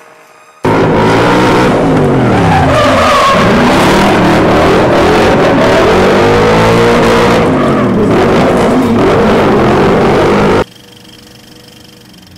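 Drift car engine revving hard up and down while its rear tyres squeal and skid. The sound comes in suddenly about a second in and cuts off abruptly near the end.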